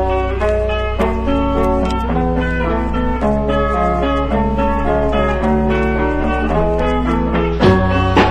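Instrumental passage of a moody mid-1960s garage-rock song: an electric lead guitar plays a slow melodic line of held notes over a steady low bass, with the drums sparse until they come back strongly near the end.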